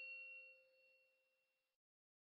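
The faint ringing tail of a bell-like chime sound effect, a few steady tones fading away and dying out about a second in.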